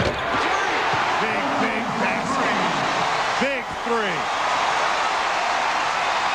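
Arena crowd noise during live play on a basketball court, with sneakers squeaking sharply on the hardwood floor, several squeaks together a little past the middle. There is a single sharp knock right at the start.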